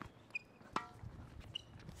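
A tennis ball struck by a racket about three-quarters of a second in: a single sharp hit with a short ring. Two brief, faint high squeaks come before and after it.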